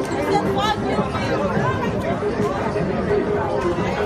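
Several people talking over one another: steady, indistinct chatter with no words clearly picked out.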